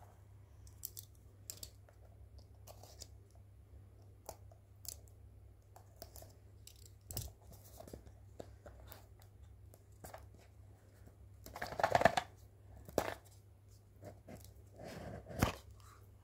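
A small cardboard puzzle box being handled and opened by hand: scattered light taps and clicks, then a louder rustle of cardboard about twelve seconds in and a shorter one near the end as the lid comes off.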